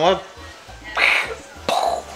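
A person coughing: a short breathy burst about a second in, then a sharper, sudden cough near the end.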